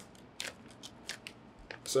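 Plastic vacuum-seal bag crinkling in a handful of short, separate crackles as it is opened and the marinated mushroom is pulled out.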